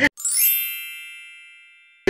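An edited-in chime sound effect: a quick sparkling run of bell-like tones that settles into a ringing chord and fades out over about a second and a half.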